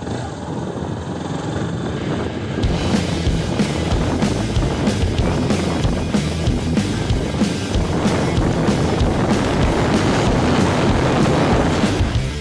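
Single-cylinder Yamaha XTZ Ténéré 250 motorcycle engine running as the bike rides off, then about two and a half seconds in, rock music with a steady beat comes in suddenly and covers everything.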